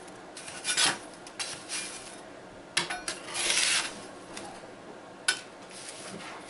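Metal putty knife scraping through and breaking up dry, flaky freeze-dried milk on a metal freeze-dryer tray: several scraping strokes about a second apart, with two sharp clicks.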